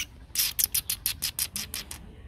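Young H'mông bobtail dog panting rapidly with its mouth open: a quick, even run of short breaths, about six or seven a second, starting about a third of a second in.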